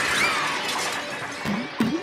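Glass shattering: a sudden crash that dies away over about two seconds.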